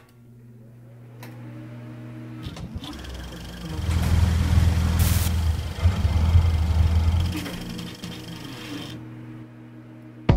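Boat engine running with a steady low hum, swelling into a louder rumble with a rushing noise through the middle before easing off near the end.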